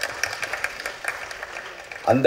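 Audience applauding, fairly quiet next to the speech on either side.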